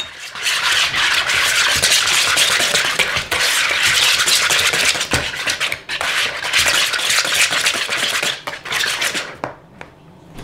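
Wire whisk beating a thick sour cream and cream of chicken soup mixture in a large plastic bowl, a steady rapid scraping and swishing. It pauses briefly about halfway and stops near the end.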